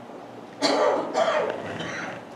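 A man coughing twice in quick succession, starting about half a second in.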